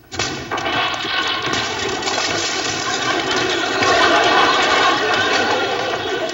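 Studio audience applauding, dense and steady, swelling a little partway through.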